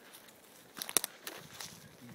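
Footsteps on dry forest ground: a few short crackles and snaps, the sharpest about a second in.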